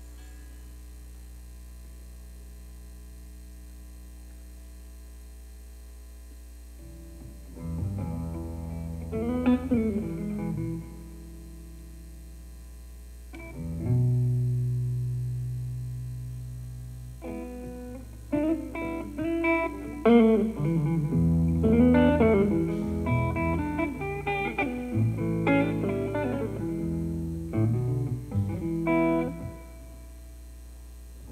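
Semi-hollow electric guitar played solo through an amplifier. Only a steady amp hum is heard for the first several seconds, then a few picked notes and a low note left ringing. From about halfway on comes a steady run of blues licks.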